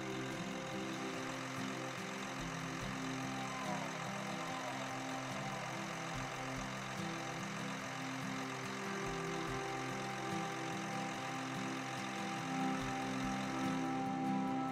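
Caterpillar Challenger 75C track tractor's diesel engine idling steadily.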